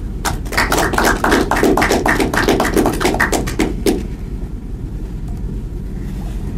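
Small audience applauding: many quick, irregular claps for about four seconds, then stopping, leaving a low steady room hum.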